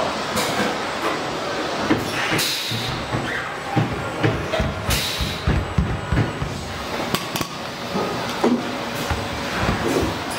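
Car assembly-line noise: irregular knocks and clunks over a steady factory din, with two short hisses of air about two and a half and five seconds in.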